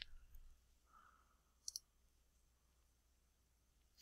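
Near silence: room tone, broken by a short click at the very start and a sharp computer-mouse click a little under two seconds in.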